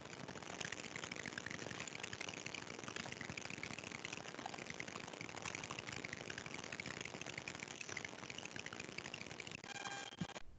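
Faint, steady hiss of background noise picked up through an open videoconference microphone, with no clear voice or distinct event.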